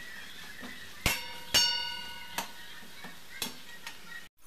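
A metal spatula knocking and scraping against a stainless-steel kadhai (wok) while stir-frying vegetables. Two loud clangs come about a second in, the second ringing on for most of a second, followed by a few lighter taps.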